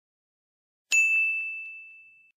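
A single high, bell-like ding sound effect struck about a second in, ringing out on one clear tone and fading away over about a second and a half.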